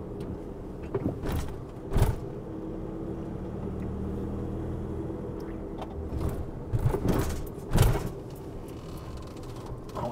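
Inside the cab of a VW Crafter diesel van driving slowly: steady engine hum and road noise. There is a pair of thumps around two seconds in and more thumps about seven to eight seconds in as the van rolls over speed bumps.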